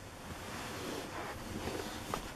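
Handling noise from a hand-held camera being moved: a soft, steady rushing hiss on the microphone, a little louder from about half a second in.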